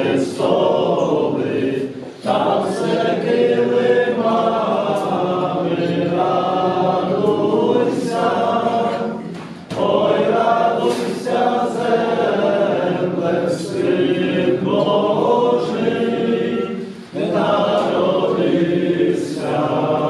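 A choir of voices singing a Christmas carol (koliadka) in long phrases, with short breaks about every seven seconds.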